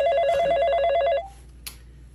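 Telephone ringing with a rapid warbling trill, cut off a little over a second in as the call is answered.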